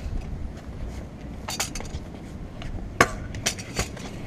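Stunt scooter on a concrete sidewalk: a few sharp metallic clicks and clacks from the scooter, the loudest about three seconds in, over a low rumble.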